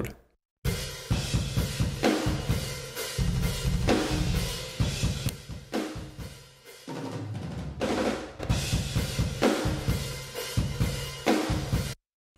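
Room microphones of the GetGood Drums Invasion sampled metal drum kit playing on their own: fast kick, snare and cymbal hits starting about half a second in, with a short lull midway. Heavy bus compression gives the kit a long, washy sustain.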